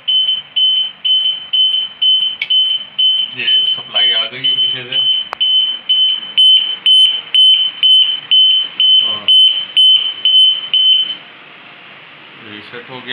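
High-pitched electronic alarm beeper on a generator control panel's power system, beeping evenly about three times a second, a warning that the panel's supply has failed. It stops suddenly about eleven seconds in.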